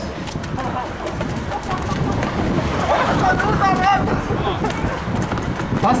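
Quick, scuffing footsteps of several people running around a pole on cobblestone pavement, mixed with the group's voices. A voice is loudest about three to four seconds in.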